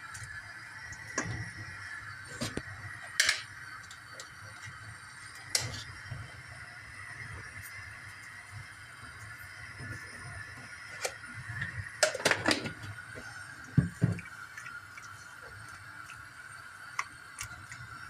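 A wooden spoon and hands stirring chopped greens in a stainless steel pot, with scattered knocks and clinks against the pot, the loudest cluster about twelve to fourteen seconds in.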